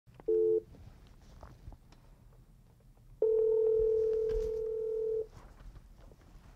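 Telephone ringback tone heard from the calling end of an outgoing call: a short burst near the start, then one steady ring about two seconds long from about three seconds in. The call is still ringing, not yet answered.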